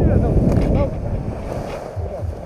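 Wind buffeting an action camera's microphone as a tandem paraglider comes in to land, the rumble dropping noticeably about a second in as the glider slows. A passenger's laughter is faintly audible.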